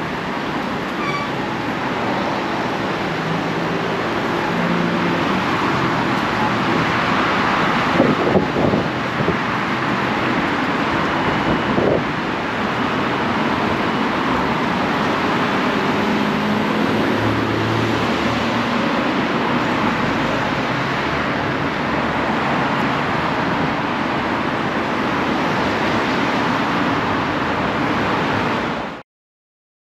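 Steady road traffic noise from cars passing on a busy multi-lane street, with a couple of brief sharp knocks about eight and twelve seconds in.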